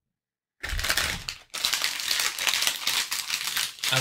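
Foil-plastic Ooshie blind bag crinkling as it is handled and squeezed in the hands, starting about half a second in, with a short break partway through.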